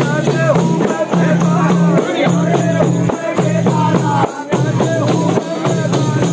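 Several daf frame drums beaten together in a fast, steady rhythm, with men's voices chanting over them.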